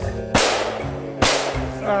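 Two shotgun shots just under a second apart, each a sharp crack with a short decaying tail, fired at a flushing game bird, over background music.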